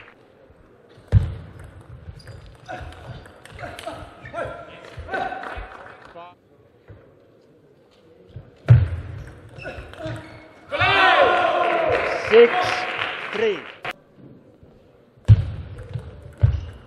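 Table tennis play: scattered sharp knocks and thuds of ball, bats and feet on the court, with several louder single knocks. About eleven seconds in, a few seconds of loud shouting, as after a won point.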